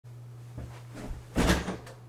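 A man sitting down in a leather office chair: a few light knocks, then a loud thump and rustle about one and a half seconds in. A steady low hum runs underneath.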